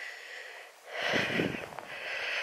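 A person breathing audibly close to the microphone: three soft breaths, the middle one, about a second in, the loudest.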